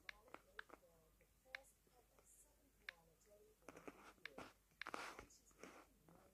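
Faint, irregular light taps of fingertips on a tablet's touchscreen keyboard as a word is typed, about one tap a second, with a soft breathy rustle about five seconds in.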